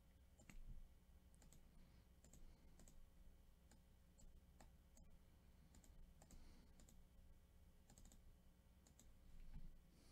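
Faint computer mouse clicks, scattered single and closely paired clicks every second or so, over a low steady hum.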